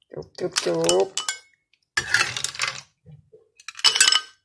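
A metal ladle scraping and clinking against a wok as snails in curry broth are scooped out and tipped into a bowl. The snail shells knock and clatter against the ladle and the bowl, with sharp clinks near the start and just before the end.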